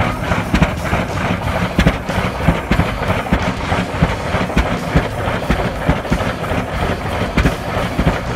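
1921 Rumely OilPull G20-40 tractor's two-cylinder kerosene engine running: a low rumble with a quick, somewhat uneven run of sharp knocks.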